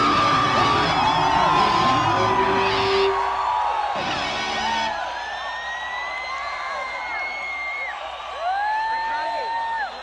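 Heavy metal band with electric guitars and drums finishing a song, ending on a last hit about four seconds in, then a concert crowd cheering with long whoops and yells.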